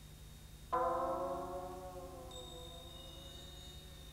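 Film score cue: a single bell-like struck chord comes in suddenly just under a second in, then rings on and slowly fades.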